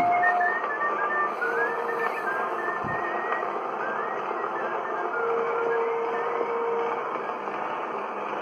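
An acoustic-era Edison Diamond Disc record playing on an Edison disc phonograph: its closing bars of music, a thin high melody line and a few held notes, over heavy surface hiss. The music ends about seven seconds in, and only the record's surface noise goes on.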